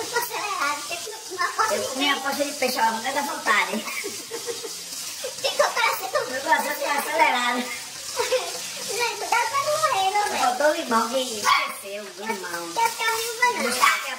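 A man and a woman laughing and talking, their voices running on without pause over a steady hiss.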